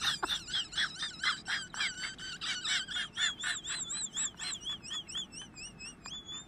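Rapid, high, bird-like chirping, about four or five chirps a second. About halfway through it turns into a wavering, warbling whistle.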